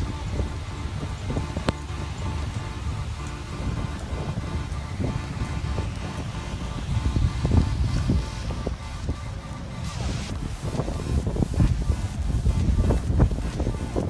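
Strong gusting wind buffeting a phone's microphone as a low, uneven rumble, swelling louder a couple of times, with faint background music under it.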